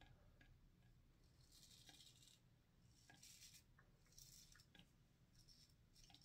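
Faint scraping of a Feather SS straight razor cutting through lathered beard stubble, in four or five short strokes, with near silence between them.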